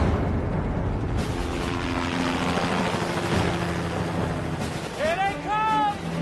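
Steady rushing engine noise of arriving military vehicles, with held music chords underneath. A high voice calls out twice, rising and falling, near the end.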